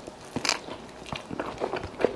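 A person bites into a club gyro sandwich close to the microphone, with one loud bite about half a second in, followed by chewing.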